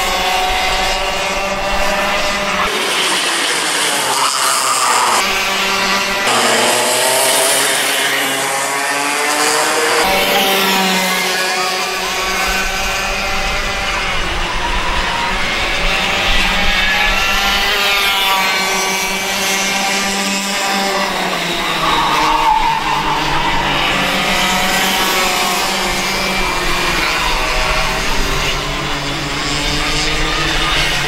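Two small racing kart engines, buzzing close together as the karts lap the circuit, their pitch rising on each straight and dropping into the corners again and again.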